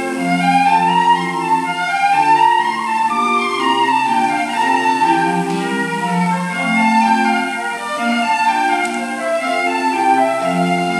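Recorded choir music played back through a small stereo's speakers: several parts holding long notes in harmony, moving from chord to chord.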